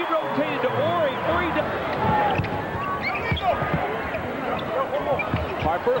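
A basketball bouncing on a hardwood arena court during live play: a string of separate bounces over steady arena noise.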